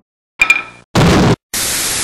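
Dubbed cartoon sound effects: a sharp hit with a brief ringing tone, then a short, loud burst of noise, then about a second of steady TV static hiss, the white-noise sound of a dead channel or glitch screen.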